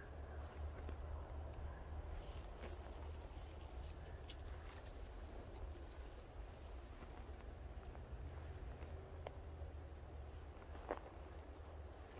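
Quiet pine-forest ambience: a faint low rumble under soft, irregular rustles and a few light clicks from the forest floor, the clearest click near the end.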